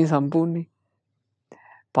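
A man's voice speaking Sinhala in a sermon, breaking off a little over half a second in. A pause follows, with one brief faint sound about a second and a half in.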